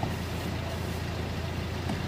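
Steady low hum of a car's engine and running gear heard from inside the cabin, even and unbroken.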